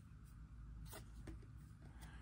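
Faint rubbing and sliding of a stack of trading cards being handled, with a couple of soft flicks about a second in as a card is turned over.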